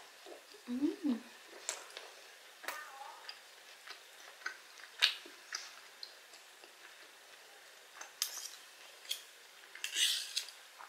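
Metal knife and fork clinking and scraping against a wooden serving board while corn kernels are gathered onto the fork: a scatter of short, sharp clicks at an uneven pace. A brief hum from the eater about a second in.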